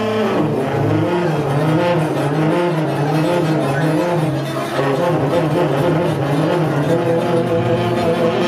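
Free-improvised trio of tenor saxophone, bowed double bass and archtop guitar playing together, a dense texture of wavering, sliding pitches.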